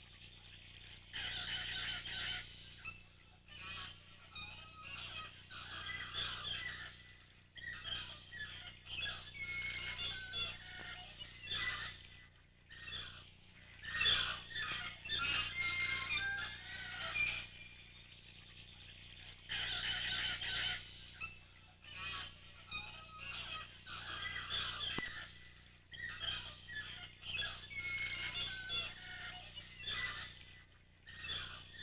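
Birds chirping and twittering in bursts of one to three seconds, with short quieter pauses between.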